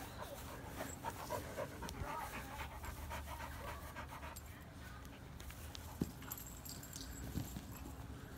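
A dog panting quickly, about five short breaths a second, for the first four seconds or so, then fading.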